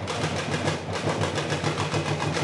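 Street percussion group playing Brazilian-style drums in a fast, dense rhythm, with a loud steady low rumble underneath.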